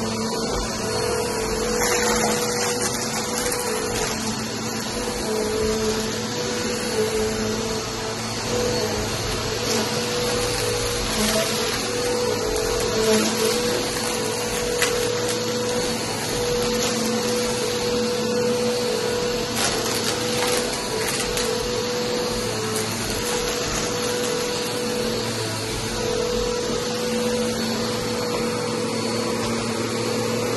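Upright vacuum cleaner running steadily over a low-pile area rug, its motor holding an even hum over the rush of suction. A few short clicks come through as it passes over crumbs on the rug.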